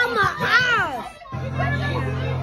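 Children's excited voices, shrill and rising and falling, in the first second. After a short break, people chatting over a steady low hum.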